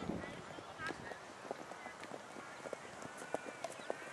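Football pitch sounds: distant players' voices calling, with scattered short thuds of running footsteps.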